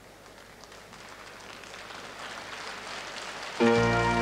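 Audience applause that starts faint and slowly swells. Near the end an orchestra breaks in loudly with brass playing held chords.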